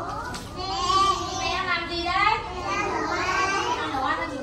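High-pitched young children's voices in drawn-out, sing-song phrases.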